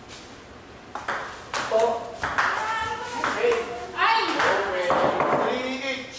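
Table tennis ball clicking sharply off paddles and table during a rally, a few hits starting about a second in, with people's voices over the second half.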